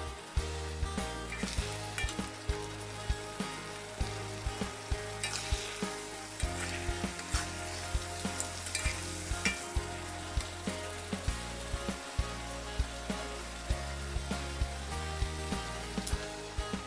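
A saucy salted-fish and pineapple sambal sizzling in a wok while a metal spatula stirs it, scraping and clicking against the wok many times.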